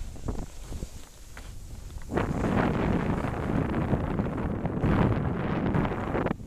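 Wind rushing over the microphone of a camera carried by a skier moving downhill, mixed with the hiss of skis on packed snow. It grows louder about two seconds in.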